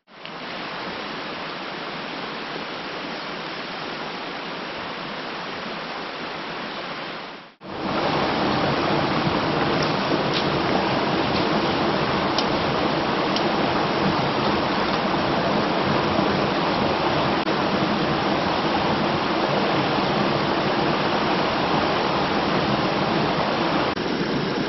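Fast mountain trout creek rushing over rocks in riffles, a steady rush of water. It drops out briefly about seven and a half seconds in and comes back louder and closer, with a few faint clicks soon after.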